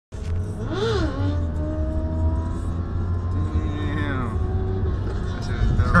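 Motorcycle engine revving up and back down about a second in, then running steadily at high revs, its pitch dropping around two-thirds of the way through, over a steady low rumble.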